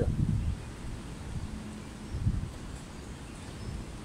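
Wind buffeting the microphone, a low uneven rumble with a few slightly louder gusts.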